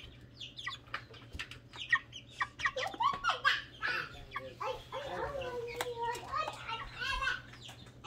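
Baby chick peeping: many short, high chirps in quick succession, with people's voices talking in the middle part.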